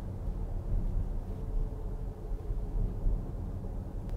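Steady low road and tyre rumble inside the cabin of a Jaguar I-PACE electric car while it is being driven, with no engine sound.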